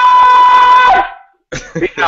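A very loud, steady high-pitched tone, held without a break and cutting off about a second in.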